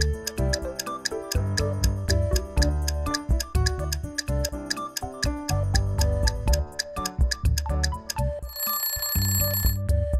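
Upbeat background music with a clock ticking steadily under it as a countdown timer runs. Near the end, an alarm rings for about a second as the time runs out.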